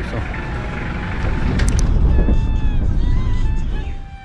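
A loud, steady low rumble of outdoor noise, with a couple of sharp clicks shortly before halfway. Background music comes in a little past halfway.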